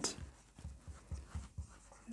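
Dry-erase marker writing on a whiteboard: a run of short, faint strokes as letters are drawn.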